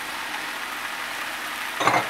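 Chicken breasts, sliced peppers and red onion sizzling steadily in a hot buttered frying pan.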